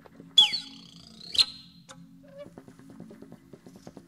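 Two short, high-pitched squeals over backing music. The first, about half a second in, falls in pitch and is the loudest sound; the second comes about a second later. The music under them has a low steady drone and a quick ticking beat.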